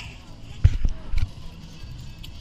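A few dull thumps and knocks from an action camera being grabbed and handled: two about half a second in, then another pair a little later.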